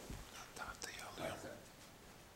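Dry-erase marker writing on a whiteboard: a quick run of faint scratchy strokes with a few short squeaks.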